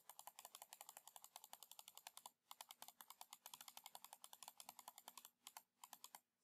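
Faint, fast clicking at a computer, about nine or ten clicks a second, with a short break about two and a half seconds in and another near the end.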